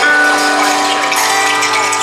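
Rain stick being tipped upright, its filling trickling down the tube in a steady rustling patter, over sustained instrumental notes.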